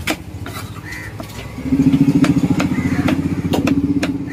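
A knife chopping tuna flesh on a wooden chopping block, sharp knocks about twice a second. From about a second and a half in, a loud engine runs close by, steady in pitch, and is louder than the chopping.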